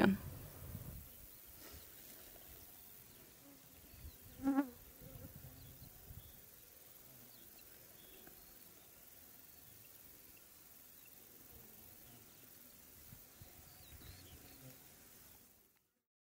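A flying insect buzzing briefly and loudly past the microphone about four and a half seconds in, over a faint, quiet meadow background; the sound cuts out just before the end.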